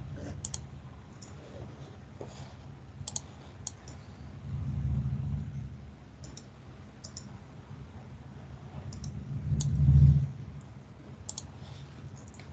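Scattered light clicks from computer use, a few every second or two, irregular rather than steady typing. Two low muffled swells sit under them, one in the middle and a louder one shortly before the end.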